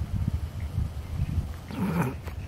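Irregular low rumble of wind buffeting the phone's microphone, with a brief louder burst of noise near the end.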